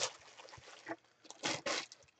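Clear plastic bag crinkling in a few short rustles as a hand lifts a bagged jersey out of its box, mostly in the second half.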